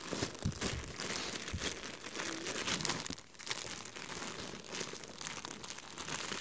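Clear plastic poly bags around folded flannel shirts crinkling as they are handled and lifted, in irregular crackles.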